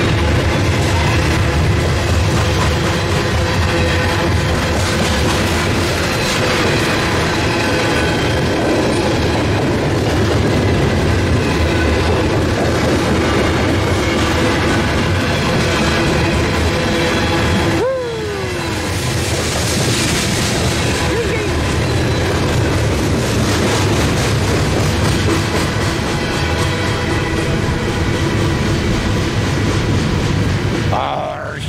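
A long train of loaded CSX coal hopper cars rolling past close by: a loud, steady rumble of steel wheels on the rails, with steady ringing tones over it. About eighteen seconds in, the sound dips suddenly and a falling tone is heard.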